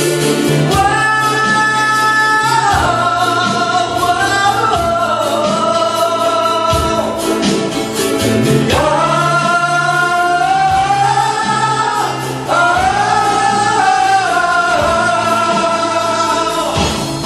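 Live band performance of a song: a large ukulele ensemble strumming with saxophone and guitars over a steady beat, while singers hold long notes that slide between pitches. The music briefly drops back about twelve seconds in before picking up again.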